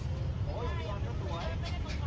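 Outdoor city ambience: a steady low rumble with voices talking softly over it from about half a second in.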